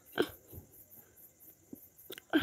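A short breathy sound from a person eating panipuri, a little after the start, with a fainter one just after it; otherwise fairly quiet.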